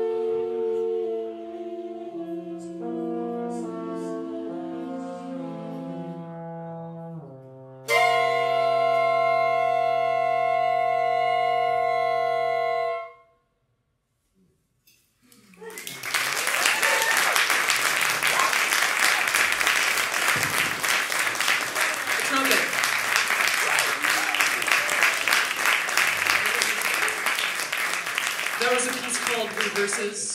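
Big band horn section of trumpets, trombones and saxophones holding sustained chords that shift. About 8 seconds in they swell into a loud final held chord that cuts off sharply around 13 seconds, the end of the piece. After a brief silence an audience breaks into steady applause.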